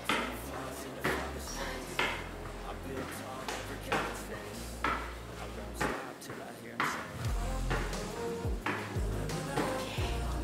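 Rebound-boot (Kangoo Jumps) landings on a tiled floor, a sharp clack about once a second as the wearer steps and bounces in place, over background music.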